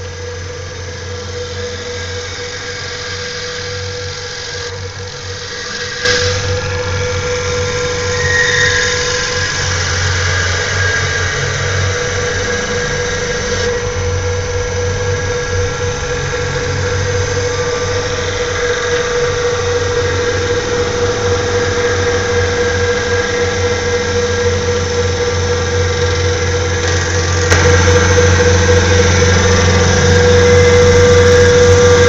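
CNC wood lathe running: a steady whine over a low motor hum, with the noise of the knife cutting into the spinning newel blank. It gets louder about six seconds in and again near the end.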